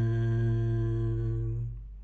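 A voice holding one steady low note at the end of a sung phrase, fading away about three-quarters of the way through.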